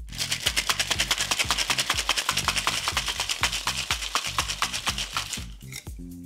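Metal tin-on-tin cocktail shaker shaken hard, ice rattling against the tins in rapid, even strokes, dying away about five and a half seconds in. Background music plays underneath.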